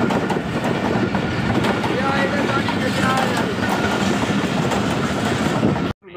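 A train moving alongside the station platform: a continuous rumble and clatter of its wheels on the rails, with a few voices faintly over it. It cuts off abruptly just before the end.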